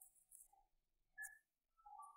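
Near silence: faint room tone with a few faint, brief high tones.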